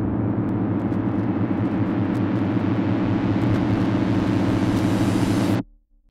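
A steady, low rumbling drone made of several held tones, growing brighter as it goes, that cuts off suddenly about five and a half seconds in.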